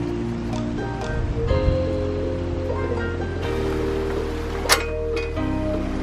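Background music: sustained chords over a steady bass, changing about every two seconds, with one sharp hit near the end.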